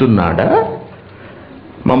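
A man's voice lecturing. A word ends in a rising, drawn-out syllable about half a second in, then there is a pause of about a second before he speaks again near the end.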